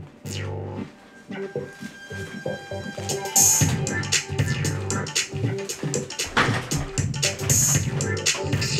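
Electronic music played on an electronic keyboard: sparse notes at first, then a full, steady beat from about three seconds in.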